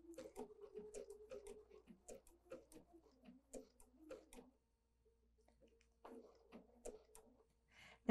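Bernina 770 QE sewing machine stitching a blanket stitch slowly, heard faintly as a quick ticking of about five stitches a second over a low motor hum. It stops about halfway through and starts again briefly near the end.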